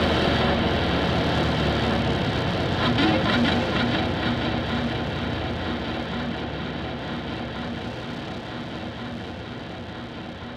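Distorted electric guitar ringing out in a dense wash of noise that fades steadily as the song ends.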